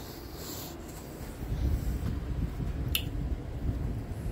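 Handling noise: low, uneven rubbing and bumping that grows louder about a second and a half in, with a single sharp click about three seconds in.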